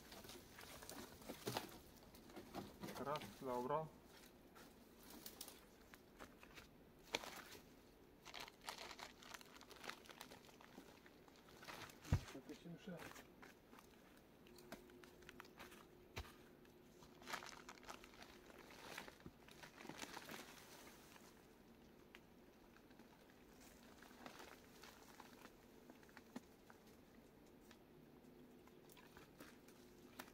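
Dry branches and brush cracking and rustling as they are pulled by hand off a brush pile, in scattered faint snaps and crunches. A sharper knock about twelve seconds in is the loudest of them.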